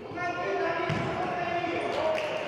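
Indoor mini-football (futsal) play in an echoing sports hall: the ball is struck with a low thud about a second in, under held shouts from players and spectators.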